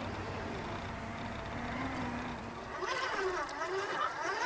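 Scale RC crawler's electric motor and gear drive whining at low speed as it crawls through mud, its pitch wavering with the throttle. About three seconds in, music with a wavering melody comes in over it.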